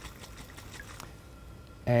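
Faint sloshing and a few small clicks from liquid being shaken in a stoppered glass separating funnel, mixing the chloroform and water layers for the extraction.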